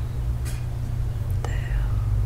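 A voice saying the name "Theo" over a steady low rumble, with a short sharp click about half a second in.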